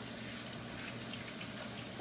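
Kitchen faucet running steadily into a stainless steel sink, with hands rinsing under the stream.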